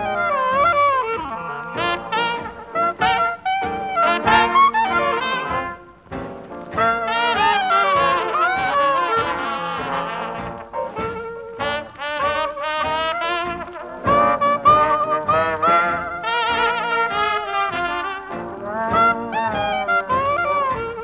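A New Orleans hot jazz band playing live, with trumpet and trombone leading over the ensemble. The horn lines waver and bend from note to note.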